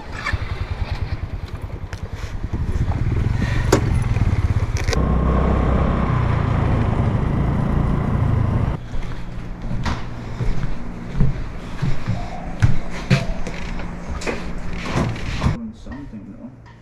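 Small motorcycle engine idling with an even low beat, then revving up and running steadily at speed. For the second half it runs lower, with scattered knocks and rattles from the rough gravel road.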